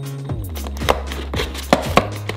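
Several sharp taps and clicks, the loudest about a second in and near the end, from hands handling a cardboard toy box and its plastic packaging, over background music with a steady bass.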